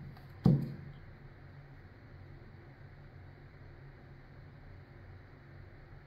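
A single sharp knock on a hard surface about half a second in, then a steady low hum of room tone.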